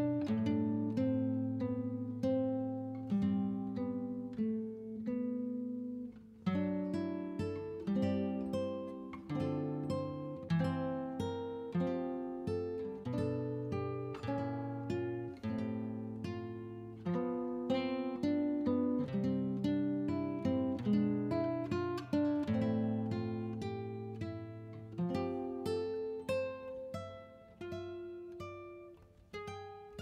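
Background music: an acoustic guitar playing a steady run of plucked notes.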